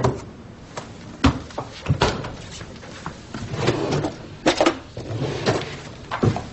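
Kitchen handling sounds: a series of sharp knocks and clatters as a refrigerator is closed and a plastic food container is taken out and handled, with some rustling in between.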